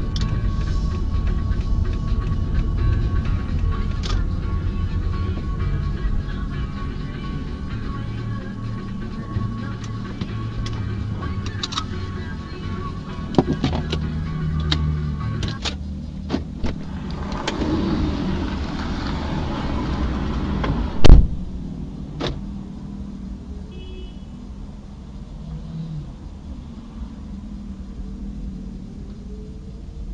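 Low rumble of a car heard from inside the cabin, with music playing, quieter once the car has stopped about halfway through. A single loud thump comes about two-thirds of the way in, with scattered light clicks around it.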